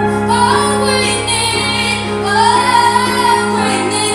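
A young woman singing a ballad solo, with long held notes, one swelling from about two seconds in, over steady sustained backing chords.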